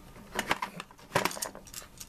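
Small metal parts and tools in a toolbox clinking and rattling as they are handled, in three brief clusters of sharp clicks.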